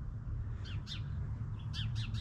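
A small songbird chirping in two short bursts of quick, high, falling notes about a second apart, over a low steady rumble.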